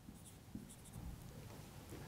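Faint squeaks and scratches of a felt-tip marker writing on a whiteboard: a few short strokes.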